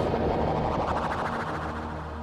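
A drumless breakdown in a live electronic beat set: the drums drop out, leaving a dense, sustained wash of tones that slowly fades.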